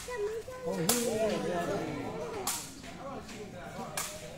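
Sharp cracks of a sepak takraw ball being kicked during a rally, two strikes about a second and a half apart.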